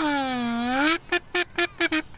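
Alphorn call: one long, brassy note that sags in pitch and climbs back, then four short, evenly spaced notes.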